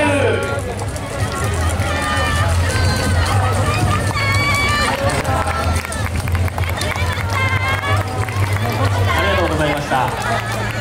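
A group of dancers' voices calling out and chattering as they run off together, with crowd noise and a steady low hum underneath. Several long held calls come about two to five seconds in and again near eight seconds.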